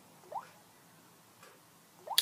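Near silence, broken about a third of a second in by a single short, wet mouth click or lip smack, with a fainter tick about a second later.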